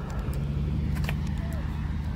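A car engine idling close by: a steady low hum, with a few faint clicks about a second in.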